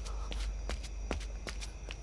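Footsteps on a paved alley, about five steps in two seconds, over a low steady rumble.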